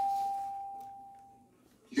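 A single pure chime tone from a TV game show's sound effects, played on a television, fading away over about a second and a half: the cue as the 25-second answer clock is set.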